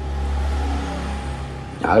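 A low rumble lasting about a second and a half, then fading away.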